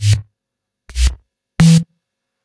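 Three short electronic bass house synth hits played back dry, without iZotope Trash distortion; the middle hit is deep and kick-like, the last carries a short steady low note.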